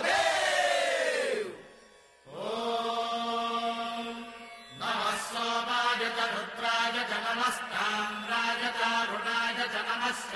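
Conch shells (shankha) being blown. The first blast falls in pitch and dies away a little over a second in. A steady held tone follows from about two seconds in, and it grows louder and fuller from about five seconds in.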